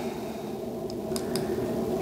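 Steady low room noise with a few faint clicks a little after a second in, from the buttons of a handheld USB-C tester being pressed to change its sampling resolution.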